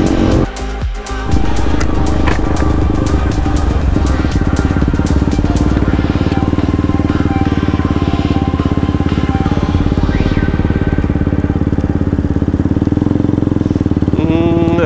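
KTM Duke 200's single-cylinder engine running as the bike rides along a highway, heard from the rider's camera. The sound dips briefly about half a second in, then carries on steadily, with less high-pitched content in the second half.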